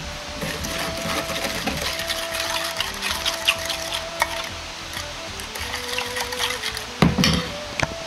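A metal spoon stirring a sauce in a small stainless steel bowl, with quick light clinks and scrapes against the steel, and a louder clatter about seven seconds in. Soft background music with held notes plays underneath.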